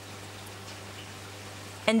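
Steady low background hiss with a constant faint hum, and no distinct sound event.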